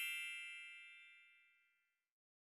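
A bell-like chime sound effect, several high tones together, ringing out and fading away over about a second and a half, then dead silence.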